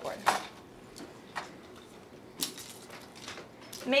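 A few sharp light clicks and taps, roughly a second apart, over quiet classroom room tone: small objects being handled.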